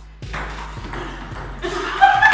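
Table tennis ball clicking against paddles and the table during a rally: a few sharp, separate ticks in a large, echoing room.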